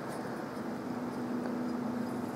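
Water bubbling steadily in a glass bubbler as vapour is drawn through it, a low even drone that starts just after the beginning.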